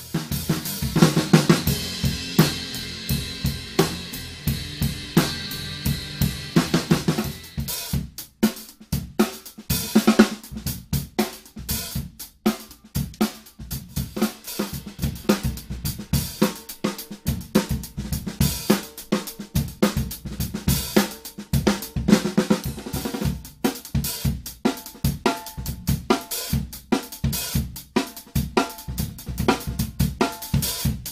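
Drum kit played in a steady groove of snare, hi-hat and bass drum, showing off a Sonor Pure Canadian 13-ply maple snare drum: first the 14-inch snare tuned low, then the 13-inch snare at medium tuning. For the first several seconds a cymbal rings on under the hits.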